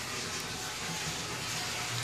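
Water running steadily into a caged plastic IBC tote tank from its fill line, a steady hiss.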